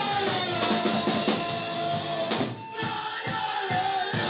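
Live punk rock band playing, with drum kit and guitar under a long held note. The sound dips briefly about two and a half seconds in.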